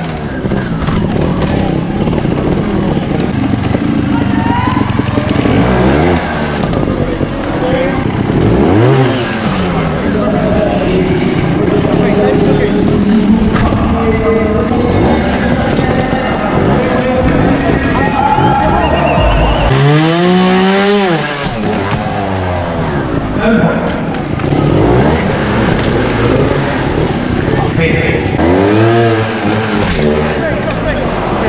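Trials motorcycle engine blipped in short revs that rise and fall in pitch several times, the loudest about twenty seconds in, over a steady arena din with a PA announcer's voice and music.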